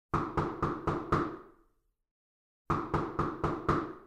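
Knocking on a door: five quick knocks, a pause of about a second, then five more.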